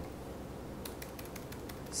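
A few scattered computer-keyboard keystrokes, mostly in the second half, over a steady low room hum.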